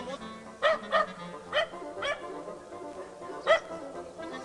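Small dog barking: five short, sharp barks at uneven intervals, the last one near the end the loudest, over background music.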